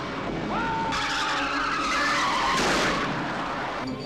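Car tyres squealing and skidding on the road, with engine noise. A squeal rises about half a second in and then holds, and a louder rush of skid noise comes near the three-second mark.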